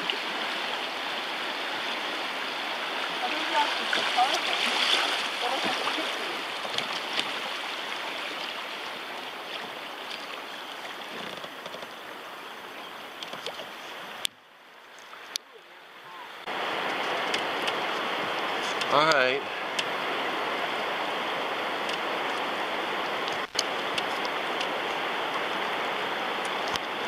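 Rushing water of a shallow river rapid around the canoe, a steady hiss of fast water over rocks. It drops away suddenly a little past the middle for about two seconds, then returns just as steadily.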